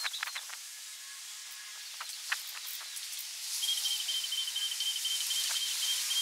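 Outdoor ambience: a steady high hiss with a few short sharp chirps. From just past the middle comes a rapid, even trill of high pips, typical of a small bird or an insect.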